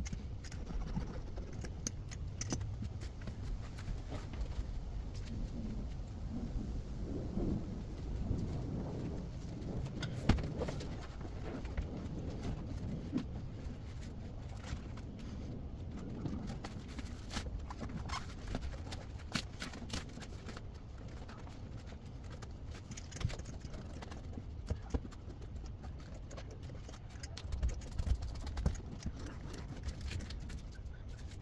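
Scattered knocks, taps and rustling as rubber sound-deadening foam sheets are handled, laid onto a steel vehicle floor pan and pressed down by hand, over a low steady background rumble.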